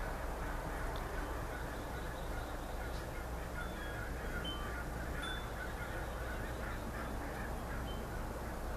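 Birds calling in the background: scattered short chirps and calls over a steady low hum, mostly in the second half.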